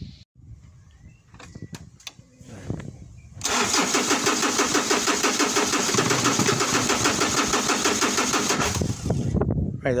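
Ford Ranger's WE diesel engine cranked on the starter for about five seconds, turning over at an even rhythm but never catching: a crank-no-start that new glow plugs have not cured, on a battery reading about 12 volts.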